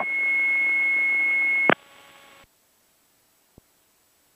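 A steady, high-pitched single tone in the aircraft radio audio, heard right after the automated weather broadcast, cuts off with a click after under two seconds. A faint hum lingers briefly before the audio goes silent.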